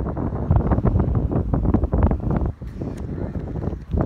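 Wind buffeting the phone's microphone: a gusty low rumble, heaviest in the first half and easing about two and a half seconds in.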